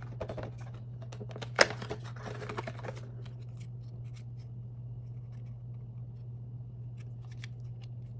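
Perforated cardboard door of an advent calendar being pushed in and torn open, crackling with one sharp snap about a second and a half in, then sparse light clicks as a tiny plastic blister-packed toy is handled. A steady low hum runs underneath.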